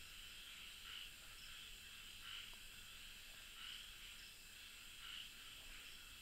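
Near silence with a faint, steady high chirring of night insects that swells about every second and a half.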